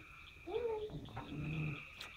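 A dog giving a short whine, then a low growl.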